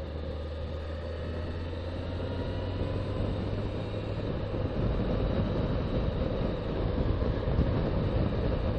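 Suzuki Bandit motorcycle's inline-four engine running at road speed, with wind and road noise, growing a little louder over the stretch.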